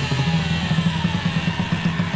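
Hardcore punk band playing: electric guitar and drums in a loud, driving instrumental passage.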